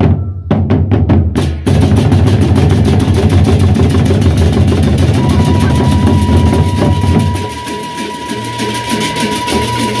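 Gendang beleq ensemble: large Sasak double-headed barrel drums struck with beaters and bare hands, with hand cymbals. A few separate drum strokes open, then about two seconds in the full ensemble comes in with fast, dense, steady drumming, and a steady high tone joins about halfway.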